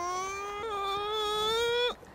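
An actor playing an old crone makes a long, drawn-out, high-pitched vocal crone noise. It is one held call, rising slowly in pitch, that cuts off abruptly just before the end.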